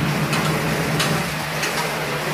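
A steady low machine hum under a noisy background, with a few light clicks and rustles as wet potato slices are handled in the dehydrator's stainless-steel basket.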